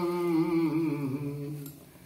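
A man's voice chanting a Sanskrit havan mantra, drawing out the 'svāhā idaṁ' refrain that marks an oblation to the fire as one long, slowly falling note that fades out near the end.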